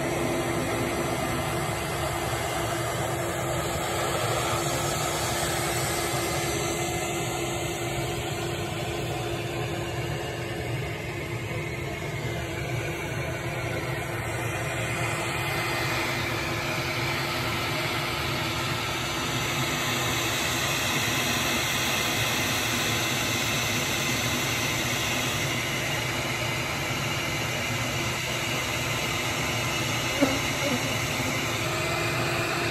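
Honeybee colony buzzing, a steady drone with one held pitch, from bees massed on exposed comb in an opened irrigation valve box.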